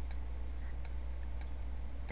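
Faint, sharp clicks about one or two a second, over a steady low hum.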